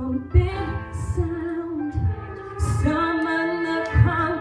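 A woman singing a slow worship song into a microphone over instrumental backing, with held, gliding notes and low bass notes underneath.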